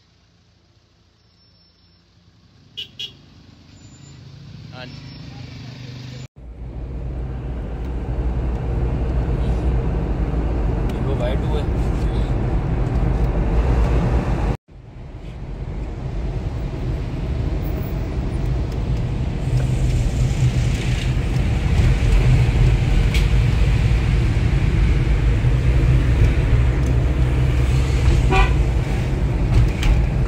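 A vehicle driving on a road, heard from inside: steady engine and road rumble with horn toots. The sound builds up over the first few seconds and cuts out sharply twice, about six and fifteen seconds in.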